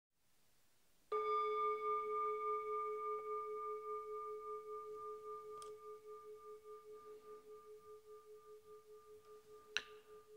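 A singing bowl struck once about a second in, ringing with a low tone and a higher overtone that waver slightly and fade slowly; it marks the end of the seated meditation period. A brief click near the end.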